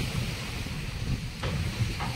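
Wind buffeting the microphone in a steady low rumble, over sea waves washing against the edge of a steel barge deck.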